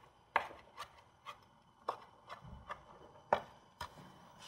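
Chef's knife chopping Italian parsley on a cutting board: about eight separate, unevenly spaced knife strikes, roughly two a second.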